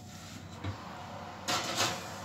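A pie dish being loaded into an oven: two brief scraping sounds about a second and a half in, over faint room noise.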